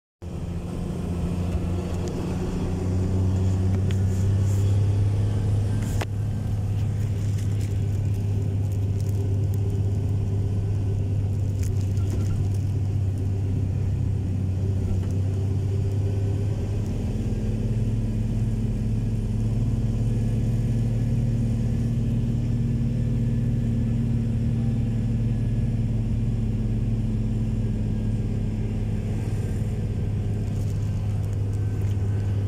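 Engine and road noise heard from inside a moving vehicle's cabin: a steady low drone whose pitch rises slightly about seventeen seconds in. There is a single sharp click about six seconds in.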